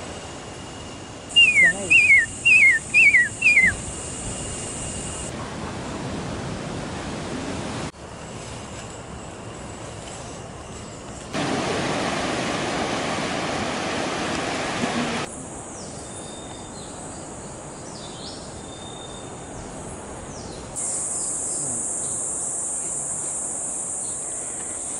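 A bird whistles five short notes in quick succession, each falling in pitch, over a steady high hiss. Later, surf washes over rocks for about four seconds. The rest is quieter forest ambience with scattered faint bird calls, and the steady high hiss returns near the end.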